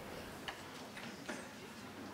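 Two short clicks from a laptop being worked: one about half a second in, another just past a second. Between them is the low hiss of a quiet hall.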